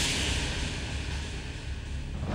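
A dramatic soundtrack sting: a sudden burst of hissing noise, like a whoosh or cymbal wash, that starts abruptly and slowly fades.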